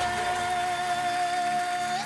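A woman's singing voice holding one long, steady high note over sustained instrumental accompaniment; the note ends near the end.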